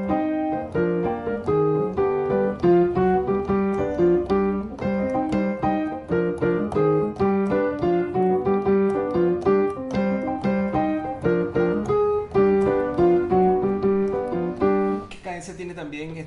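Digital piano playing a syncopated salsa montuno over the Andalusian cadence in C minor, ending on G7. The left hand holds C minor in second inversion while the right hand plays chords starting on the tonic. The playing stops about a second before the end.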